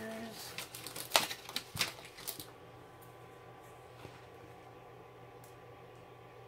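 Handling clicks and light clatter as a pair of tweezers is picked up from among small tools, the sharpest click a little over a second in; the rest is quiet room tone with a low hum.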